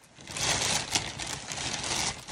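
Plastic bag crinkling and rustling as it is handled, a dense run of crackles.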